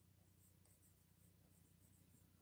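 Near silence: faint ticks and scratches of a stylus writing on an interactive smart-board screen, over a steady low hum.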